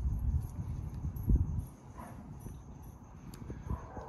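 Handling noise of a plastic phone mount and a small Allen key being worked by hand: rubbing and fumbling with one dull knock about a second in, then quieter with a small click near the end.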